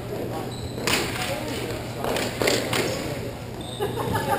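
Sharp clacks of hockey sticks striking on the rink, one about a second in, then three in quick succession a little after two seconds, with players' voices in an echoing arena.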